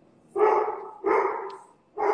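A dog barking: two loud barks in quick succession, the first about a third of a second in and the second about a second in.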